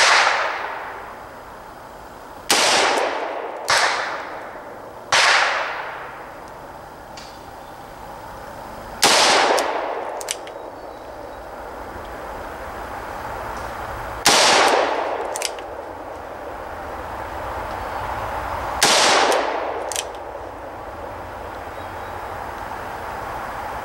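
Ruger GP100 six-inch double-action revolver firing seven single shots at uneven intervals of one to five seconds. Each is a sharp crack with a long echoing decay. A few fainter short ticks follow some of the shots.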